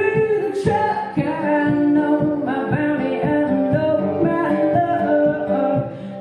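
An acoustic guitar is played live under a voice singing long held notes, with no clear words.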